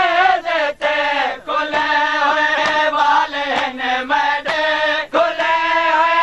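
Voices chanting a noha, a Shia lament, in unison, in long held melodic lines with short breaks between phrases.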